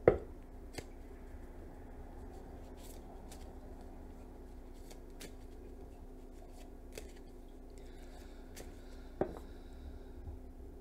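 A tarot deck being shuffled by hand: soft scattered taps and rustles of the cards, with a sharper knock as it begins and another about nine seconds in. A low steady hum lies underneath.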